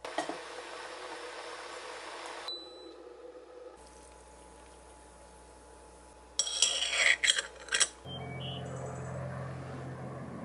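Kitchen sounds: a steady hiss of running water for the first couple of seconds, then, about six and a half seconds in, a quick run of sharp metal clinks and clatters from a steel pot and utensils, followed by a steady low hum.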